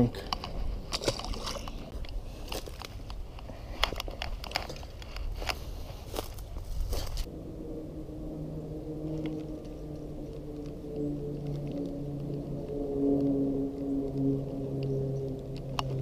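Clicks and handling clatter of fishing tackle for the first seven seconds, then a steady hum with overtones from about eight seconds in: a spinning reel being cranked to retrieve the lure, growing a little louder near the end.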